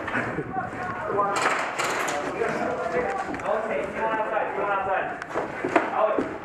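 Men's voices talking over one another, unclear and without words that can be made out. A few sharp knocks come about a second and a half in.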